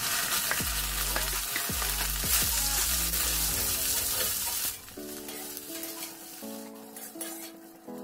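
Soya chunks sizzling as they fry in hot oil in a metal kadhai, stirred with a slotted metal spatula that scrapes against the pan. The sizzle drops away suddenly about halfway through, leaving soft background music.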